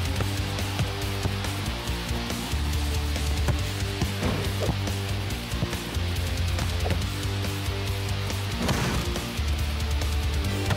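Upbeat rock-style soundtrack music with guitar over a steady, repeating bass line, with a couple of brief swishing effects about four and nine seconds in.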